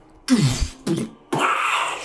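A man making a falling-and-crash sound effect with his mouth. About a quarter second in there is a sound that drops steeply in pitch, then a short burst, then a long hissing crash sound in the second half, standing for a huge hand falling and hitting the ground.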